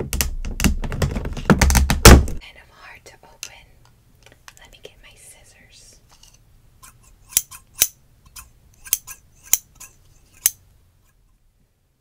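Long fingernails tapping and scratching on the plastic wrap of a toy's packaging, a dense run of crinkly clicks and taps that ends with a loud tap about two seconds in. After a quiet spell, scissors click open and shut about six times as they start snipping the wrap.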